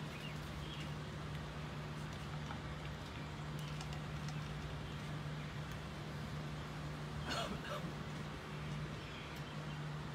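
Steady low hum over faint background noise, with one brief louder sound about seven seconds in.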